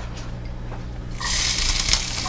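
Chopped onions going into hot oil in a pan, starting to sizzle about a second in.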